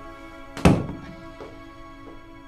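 A door slammed shut once, a single heavy thunk about half a second in, over soft background music.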